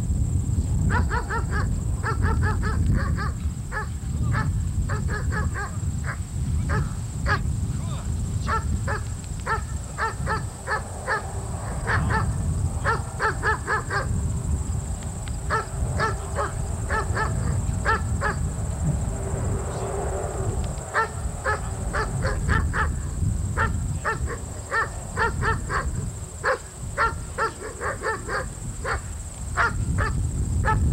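Young German Shepherd barking over and over in quick strings of short, high barks with brief pauses, as it is worked up by the handler's agitation in bitework. A steady low rumble runs underneath.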